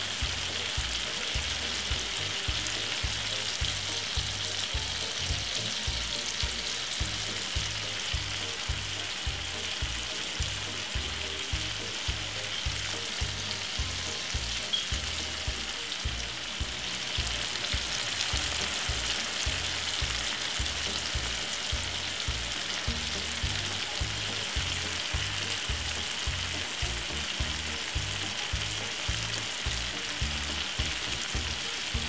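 Chicken pieces pan-frying in vegetable oil, a steady sizzle and crackle of bubbling oil, over a regular low beat.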